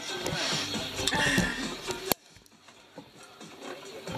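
A man laughing over background music; the sound stops suddenly about halfway through.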